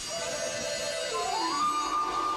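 Orchestral music: a sustained high melodic line that slides up in pitch about one and a half seconds in and holds the higher note.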